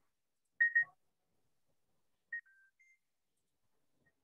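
Short electronic beeps: two quick beeps about half a second in, then three brief tones stepping down and back up in pitch around two and a half seconds in.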